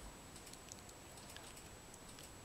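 Faint, scattered small clicks of a small dog's teeth mouthing a chew bone held out to it by hand, over quiet room tone.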